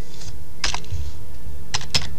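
Computer keyboard keys pressed one at a time, about four separate clicks with a quick pair near the end, as a number is keyed into a login form.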